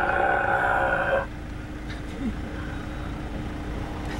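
A man's long, steady groaning drone amplified through a handheld megaphone, harsh and thin in tone, cutting off sharply about a second in. After it only a quieter background of traffic and a steady low hum remains.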